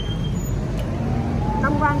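Road traffic running steadily as a low rumble, with one passing vehicle's engine note rising in pitch from about halfway through and then holding.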